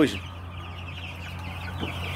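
A flock of young broiler chickens, about a month old, peeping: many short, high, overlapping calls over a steady low hum.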